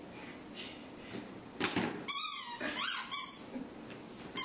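A toddler's short, high-pitched squeals or yelps: two loud ones in the second half, after a quieter start.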